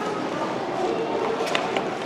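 Room tone of a large indoor public hall: faint, indistinct voices in the background, with a couple of light clicks a little past the middle.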